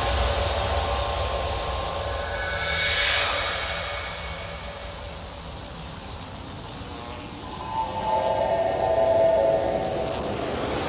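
Beatless ambient intro of a dubstep track: a hissing noise swell that rises and fades about three seconds in, then held synth tones that grow louder near the end, with no drums.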